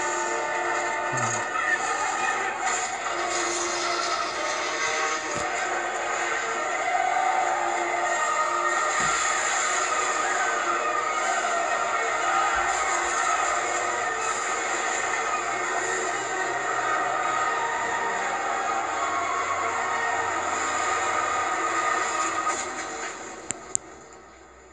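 An animated film's soundtrack playing from a television and picked up off its speaker: music mixed with sound effects. It drops away about two seconds before the end, then a single sharp click.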